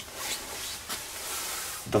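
Handling noise: a steady rustle of something rubbing close to the microphone, with no clear strokes or rhythm.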